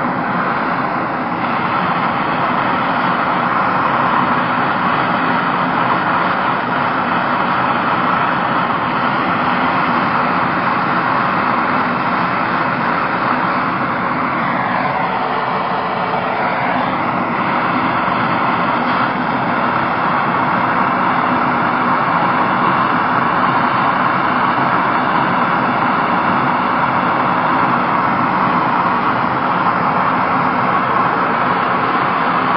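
MAPP gas blow torch flame burning steadily against a clay crucible, heating gold powder to a melt. About halfway through, the flame is drawn off the crucible and its sound briefly dips and shifts, then steadies again as it is brought back.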